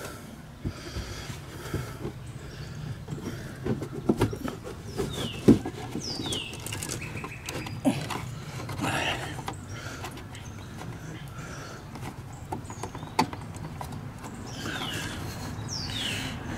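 Hands working in the tight space behind a Chevy Traverse headlight housing to reach the bulb, making scattered small plastic clicks and knocks. The sharpest click comes about five and a half seconds in.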